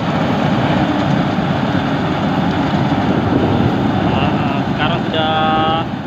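Yanmar YH850 combine harvester's diesel engine and threshing machinery running steadily under load while it cuts rice.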